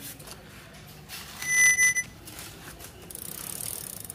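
A short, high electronic beep, one steady tone held about half a second, about a second and a half in; it is the loudest sound. Near the end, a fast run of light ticks from the road bike's freewheel as the crank is turned by hand.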